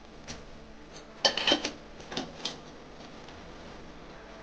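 Wooden spatula knocking and scraping against a steel bowl as roasted peanuts are stirred into melted chocolate: a few short clatters, the loudest in a quick run a little over a second in and a couple more about two seconds in.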